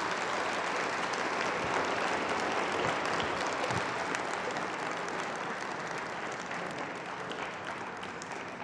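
A lecture audience applauding, a dense steady clapping that slowly fades toward the end.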